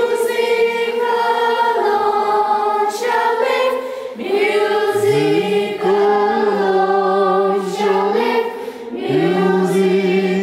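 A group of children singing together unaccompanied in a notation singing drill, holding long notes with short breaks between them. A lower voice slides up into the held note about halfway through and again near the end.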